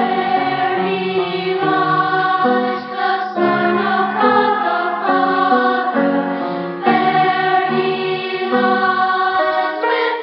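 Children's choir singing, coming in suddenly at the start. It is a cassette-tape recording that sounds dull, with no top end.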